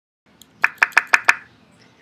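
Five quick, sharp knocks or taps, about six a second, each with a brief ringing note.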